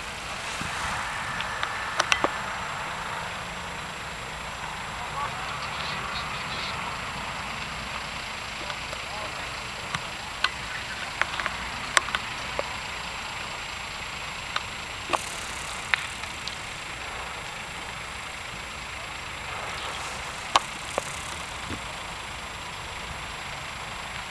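Large fire of burning freight-train wagons: a steady rushing noise with scattered sharp cracks and pops, and faint voices in the background.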